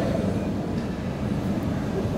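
Steady low rumble of airport terminal background noise.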